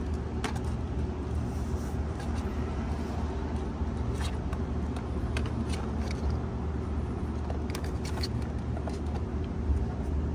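Scattered light clicks and taps of plastic as a thin light strip is pressed into the door-panel seam with fingers and a plastic trim tool, over a steady low hum.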